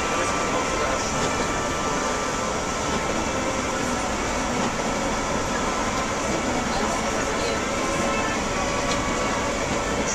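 Steady drone inside a moving bus on the highway: engine and tyre noise on a wet, snowy road, even and unbroken throughout.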